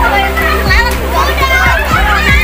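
Several children's voices shouting and chattering excitedly over background music with a steady beat.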